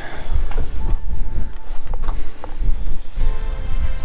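Background music with a few steady tones, over a heavy low rumble that rises and falls.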